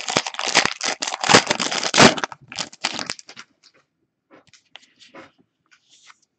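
Foil trading-card pack wrapper being torn open and crinkled, loud and crackly for about two seconds. Fainter rustling and light ticks follow as the cards are handled.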